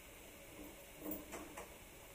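A few soft knocks and clicks from a door being handled, bunched together about a second in, over a faint room hush.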